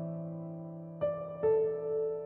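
Slow, soft piano music: a held chord fades, then new notes are struck about a second in and again shortly after, left to ring.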